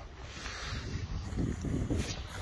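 Wind buffeting the phone's microphone: a steady low rumble.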